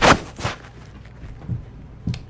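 Close-up handling noise on a phone's microphone: a sharp noisy burst right at the start and another about half a second in, then a few dull thumps.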